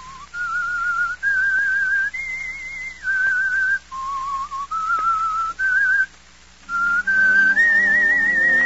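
A radio drama's whistled signature theme: one person whistling a slow melody of held notes with vibrato, stepping up and down. After a short pause about six seconds in, the whistling resumes and an orchestra comes in underneath it.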